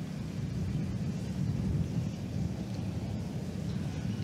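Steady low rumble of outdoor course ambience on a golf broadcast's microphone, without clear strikes or voices.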